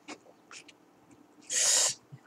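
Faint small clicks of chopsticks stirring noodles in a paper cup-noodle cup. About a second and a half in, a loud, sharp breath lasts about half a second.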